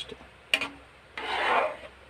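A metal spoon stirring and scraping thick tomato-and-cheese sauce in a metal pan: a short sharp scrape about half a second in, then a longer rasping scrape.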